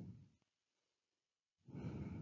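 Near silence, with a soft breath or sigh from the narrator near the end.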